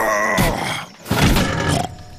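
A cartoon man's voice grunting and groaning with effort in two long strains, the sound of heaving a heavy suitcase up onto a car roof.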